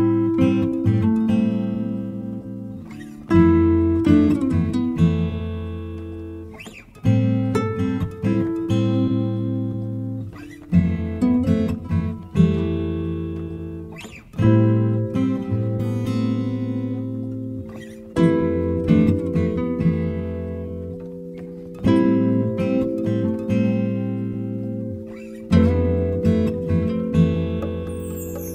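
Background music on acoustic guitar: a chord is struck about every three and a half to four seconds and left to ring and fade, with lighter plucked notes in between.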